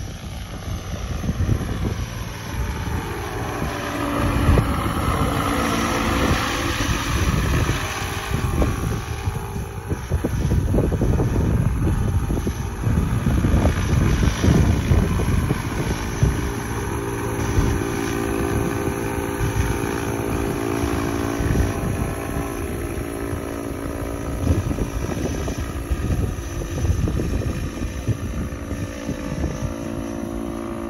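Giant-scale electric RC Chinook tandem-rotor helicopter in flight: its two SAB rotor heads beat a fast, continuous blade chop over the whine of its Scorpion HKIII brushless motor. The whine swells and bends in pitch during the first several seconds, and a steadier hum settles in from about halfway through.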